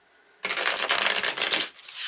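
A deck of oracle cards being shuffled by hand: a dense, steady crackling riffle that starts about half a second in and eases briefly near the end.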